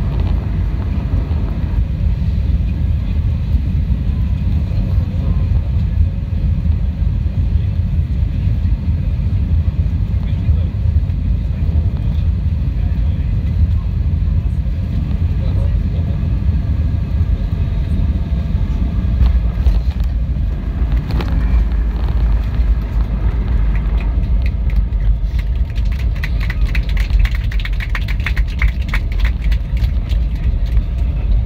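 Steady low rumble inside the cabin of an Airbus A321neo rolling on the ground after landing, engines at idle. A fast rattle joins in for the last few seconds.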